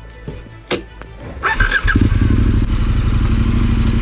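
KTM 1290 Super Adventure R's V-twin engine ticking over quietly, with a sharp knock under a second in; about one and a half seconds in the throttle opens and the engine pulls the bike away under load, running loud and steady with a rapid even beat.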